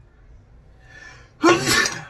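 A man sneezes once, hard and loud, about one and a half seconds in, set off by allergies.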